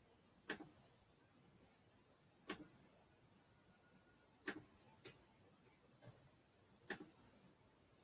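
Quiet sharp clicks: four main ones about two seconds apart, each a quick pair of taps, with a couple of fainter clicks between them.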